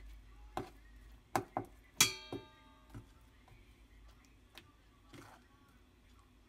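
Knife blade clicking against a plate while turning flour-dredged pollock fillets, several short taps with one sharp clink about two seconds in that rings briefly.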